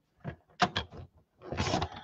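A few light clicks as the paper and trimmer rail are set, then about a second and a half in a short scrape of a paper trimmer's blade drawn along its track, cutting a thin strip off cardstock.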